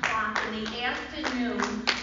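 Scattered hand claps, a few sharp irregular claps a second, mixed with voices talking.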